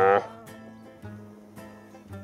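The end of a red stag's roar, a long call that cuts off just after the start. Soft acoustic guitar music follows, with single plucked notes about every half second.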